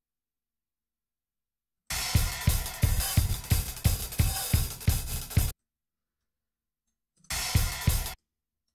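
A recorded acoustic drum kit played back through music software, kick, snare and hi-hat in a steady beat. It plays for about three and a half seconds starting about two seconds in, stops dead, and a short snippet starts again near the end. The auto-warped drums are still not quite in time.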